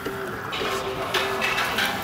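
Background music with a held, steady note that drops out and returns, over a faint noisy hiss.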